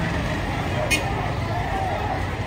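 Street ambience: a steady traffic rumble with people's voices in the background, and one short sharp sound about a second in.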